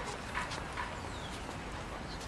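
Two short clops of a horse's hooves on stone paving, over a steady outdoor background hum.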